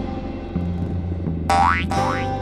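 Children's background music, and about a second and a half in, a cartoon bouncing-ball sound effect: a short boing that glides upward in pitch.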